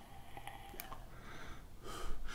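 Faint airy breathing from a vaper drawing on an e-cigarette: air pulled through a Kayfun V4 atomizer on a Dicodes Dani Extreme V2+ mod, with a faint click or two.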